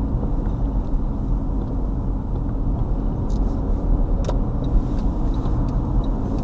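Steady low road and engine rumble inside a car driving at highway speed, with a light click about four seconds in.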